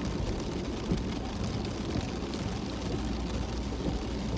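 Steady low rumble of a car's cabin noise, with a faint hiss over it.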